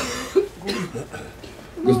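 A brief cough close to a microphone, with breath noise around it, about a third of a second in.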